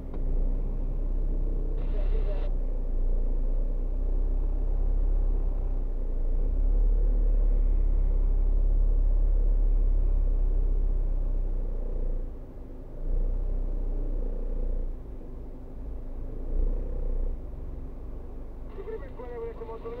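Low rumble inside a stopped car's cabin, its engine idling while other cars pass close in front; it grows louder through the middle and drops briefly about twelve seconds in. A brief voice sounds about two seconds in.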